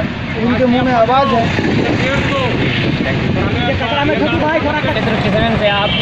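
Men talking, with a steady hum of road traffic behind. A brief high steady tone, like a horn, sounds near the end.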